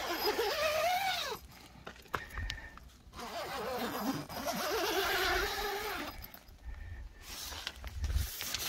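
Zipper on a pop-up privacy tent's door being pulled twice: a short zip in the first second, then a longer, slower one from about three and a half to six seconds in, its pitch rising and falling with the speed of the pull.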